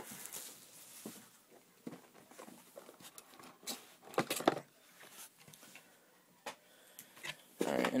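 Cardboard box of trading cards being handled and opened by hand: scattered light taps, scrapes and rustles, with a louder cluster of clicks about four seconds in.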